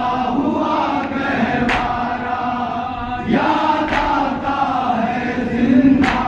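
A group of men chanting a noha, a Shia mourning lament, in unison, with a sharp slap about every two seconds: the beat of matam, chest-beating kept in time with the chant.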